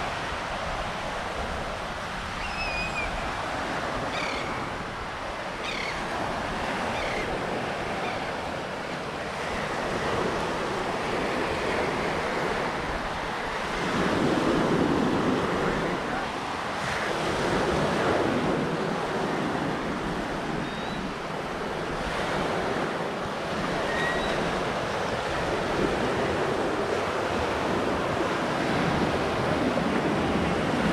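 Small Gulf surf breaking and washing up a sandy beach, swelling louder for a few seconds midway, with wind buffeting the microphone. A few short high chirps of birds flying overhead, mostly in the first several seconds and twice more later.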